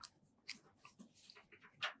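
Near silence with a few faint clicks: one about half a second in and a slightly louder one near the end, just before speech resumes.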